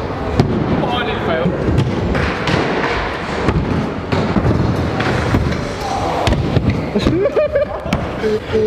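Stunt scooter wheels rolling on wooden skatepark ramps, with several sharp knocks of landings and deck impacts, over a background of voices.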